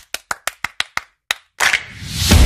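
Animated end-screen sound effects: a quick run of sharp clicks, about six a second, stopping about a second in, then one more click and a whoosh that leads into music.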